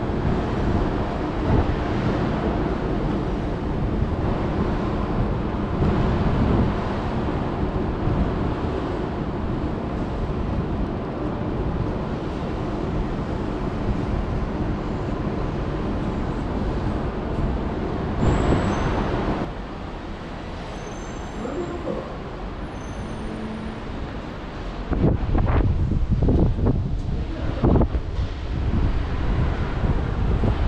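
Steady city traffic noise with a low engine hum from cars and buses on the roads below, and a brief louder surge of passing-vehicle noise about two-thirds of the way through. Near the end, irregular gusts of wind buffet the microphone.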